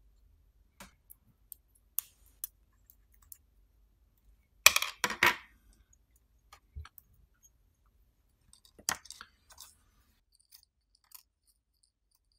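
Handling noise from a small circuit board and its parts being turned over and worked on by hand: scattered light clicks and taps, with a louder clatter about five seconds in and a smaller rattle near nine seconds.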